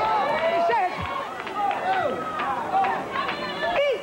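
Several voices crying out and exclaiming over one another in excited worship, their pitches swooping up and down, with no clear words.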